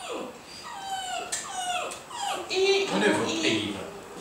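A small terrier whining in a run of high-pitched, falling whimpers.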